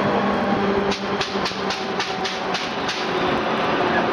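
CP Class 2000 electric multiple unit running, heard from on board: a steady rumble with a low hum, and from about a second in a run of eight or nine sharp clicks, about four a second, from the wheels on the track.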